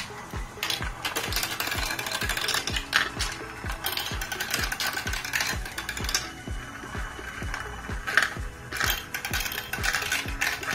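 Motorised chain elevators of a plastic marble run clicking steadily at about four ticks a second, with marbles rattling around a plastic funnel bowl and along the tracks, a few louder clatters near the end.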